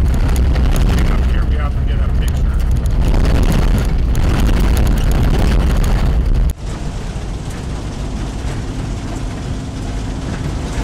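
Cabin noise of a 1951 Hudson Hornet driving: a heavy low rumble of engine, tyres and wind, with many small crackles while it runs on the gravel road. About two-thirds of the way through, the sound cuts suddenly to a steadier, somewhat quieter drone.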